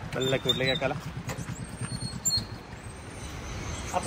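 A few words of voice in the first second, then low steady outdoor background with two faint, short high-pitched chirps.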